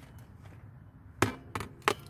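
Empty plastic water dish knocking against its wire holder as it is lifted out: three sharp knocks in the second half.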